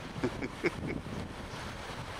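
Steady wind noise on the microphone over a choppy lake, with a few brief pitched sounds in the first second.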